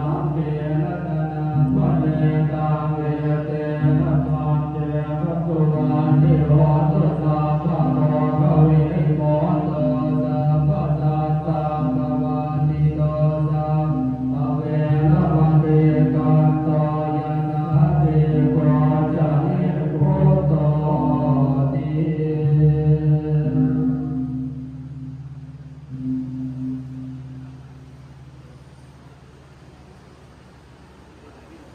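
Buddhist monks chanting together in a low, steady recitation with a regular rhythm, during the extinguishing of the victory candle in a Thai amulet consecration rite. The chant dies away near the end.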